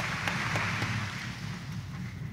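A congregation applauding, an even patter of many hands clapping that slowly thins out.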